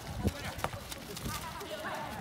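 A football being kicked on a dirt pitch: two dull thuds within the first second, about half a second apart, then lighter knocks from players' feet and the ball, with players calling out.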